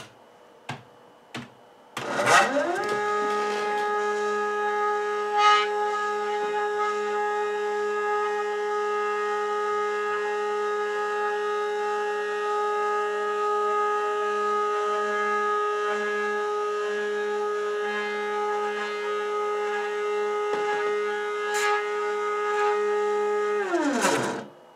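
Hobby CNC stepper motor driving the bed 180 mm along its axis: a steady singing whine with several overtones, rising in pitch as the motor ramps up about two seconds in and gliding down as it slows to a stop near the end. A few faint clicks come just before it starts.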